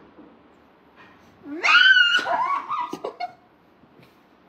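A person's high-pitched, wavering squeal that rises, holds, then falls away over about two seconds, starting about a second and a half in.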